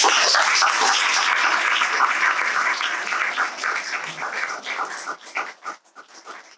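Audience applauding: a dense burst of clapping that starts all at once, then thins out into scattered single claps over the last couple of seconds.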